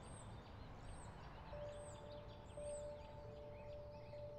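Faint birdsong: one bird repeats a high, arched chirp about once a second among other small chirps, over low outdoor background noise. Soft held music notes come in about a second and a half in.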